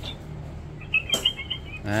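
A children's talking flashcard reader playing a short, high, squeaky animal-cry sound effect for its rabbit card through its small speaker, about a second in and lasting under a second.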